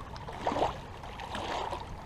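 Small waves of lake water lapping gently at a rocky shoreline, a soft steady wash.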